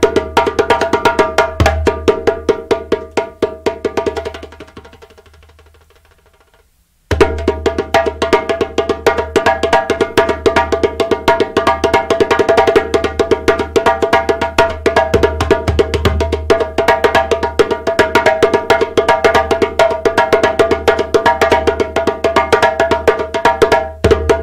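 Djembe played with bare hands in a fast, dense run of strokes. The drumming fades out about four seconds in and goes silent, then comes back suddenly at full level about seven seconds in and keeps going.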